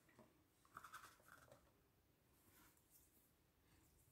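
Near silence, with a few faint, soft paper scrapes about a second in as a folded card is handled and set on a cutting mat.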